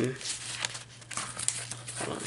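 Paper and vellum pages of a handmade journal rustling and crinkling as they are handled and turned, in irregular scratchy scrapes over a faint steady low hum.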